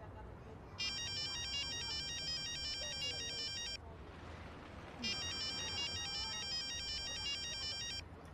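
Mobile phone ringtone for an incoming call: a bright, high electronic tune that plays for about three seconds, pauses for about a second, then starts again.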